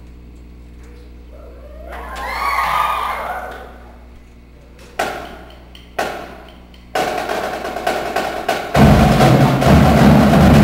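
Drumline of snare, tenor and bass drums performing. After a quiet opening and a swell, two sharp accented hits come about a second apart, then continuous drumming starts about seven seconds in and grows louder as deep bass-drum strokes join near the end.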